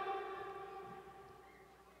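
The lingering echo of a man's voice amplified through a public-address system, ringing on as a steady tone after his last word and fading away over about two seconds.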